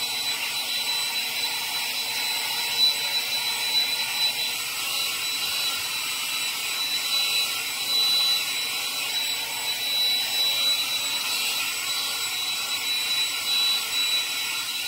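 Hair dryer with a diffuser attachment running steadily on its high speed, hot setting: an even blowing noise with a thin, high-pitched whine.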